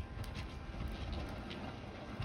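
Wind rumbling on the microphone, with a few faint, light ticks scattered through it.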